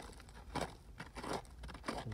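A small hand digging tool scraping and picking at loose, crumbly dump soil, with dirt crunching and falling away in a series of short, faint, irregular scrapes.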